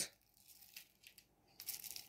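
Faint small clicks, then a short crinkling rustle near the end: a plastic model locomotive bogie being handled and picked up off bubble wrap.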